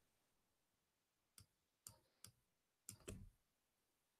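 Near silence broken by about five faint clicks from a computer keyboard and mouse, irregularly spaced from about a second and a half in, as a word is typed into a search box and searched.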